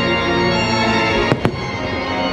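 Fireworks shells bursting: two sharp bangs in quick succession a little past the middle, over steady show music.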